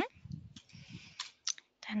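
A person's short rising 'hm' at the start, then soft mouth and breath noises and two small clicks, until speech resumes near the end.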